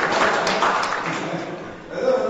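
Congregation clapping, fading out near the end.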